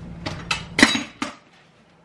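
Four quick knocks and clinks of kitchenware handled on a countertop, the third the loudest. A low steady hum underneath cuts off about a second and a half in.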